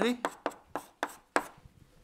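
Chalk striking and scraping on a blackboard as an equation is written: about five short, sharp taps in the first second and a half, the last one the loudest.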